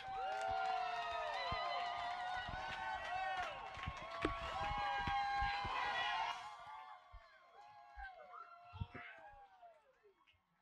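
A flock of birds calling over each other in many overlapping honking calls. About six and a half seconds in, the calls thin out and grow quieter.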